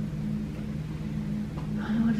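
Steady low hum of room tone.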